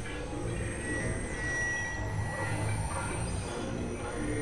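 Experimental electronic synthesizer drone music: a dense, noisy low drone with a steady high tone held for about a second and a half, and a very high tone that slides down about halfway through and then holds.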